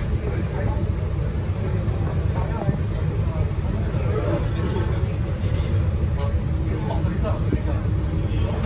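Cabin noise of an MAN NL323F single-deck city bus moving slowly: a steady low rumble from the engine and running gear, heard from inside near the front.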